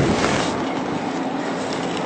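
A short tap right at the start, then a steady, even hiss of room and recording noise in a lecture hall.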